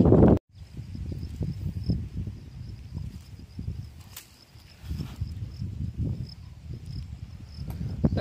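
Faint, steady, high-pitched insect trill over low, uneven rustling and handling noise.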